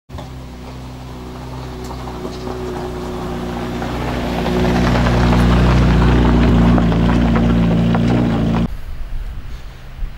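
Helicopter growing steadily louder as it approaches, its engine and rotor sound cutting off suddenly about a second before the end.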